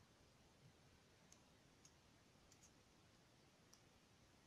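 Near silence, broken by a few faint, irregular clicks of glass crystal beads knocking against each other and the needle as a beaded bracelet is handled and stitched.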